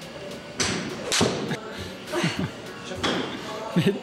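A golf shot into an indoor simulator screen: sharp club-on-ball strikes and a thud about a second in, the loudest about a second and a quarter in.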